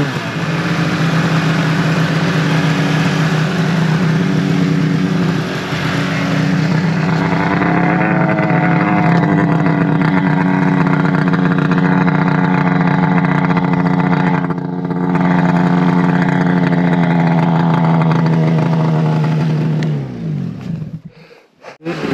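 Arctic Cat mountain snowmobile engine running at a steady high pitch, rising slightly about a third of the way in. Near the end the pitch falls and the engine sound drops away almost to nothing.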